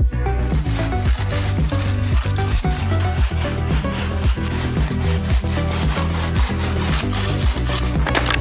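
Hand saw cutting through a softwood pine batten with repeated back-and-forth strokes, over background music with a steady beat.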